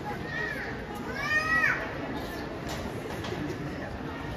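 A high-pitched voice calls out twice over a steady background of crowd chatter in the hall. The first call is short; the second, about a second in, is longer and louder and rises and then falls in pitch.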